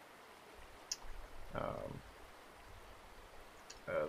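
Quiet room tone with a single sharp click about a second in and a fainter click near the end, with a short murmured 'um' between them.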